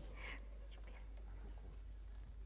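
A short breathy whisper from a voice just after the start, then faint steady hiss and a low hum from the recording.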